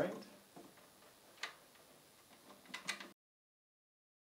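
Faint small clicks of a rack screw being fitted by hand into the front rail of a rack flight case: one click about a second and a half in, then a quick cluster of clicks near the three-second mark, after which the sound cuts off to dead silence.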